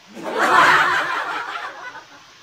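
A person's stifled, breathy laughter, a snicker that peaks about half a second in and tails off.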